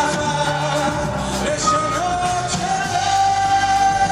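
Live rock band playing, with acoustic and electric guitars and a male lead voice singing; about halfway through a note glides up and is held long and steady.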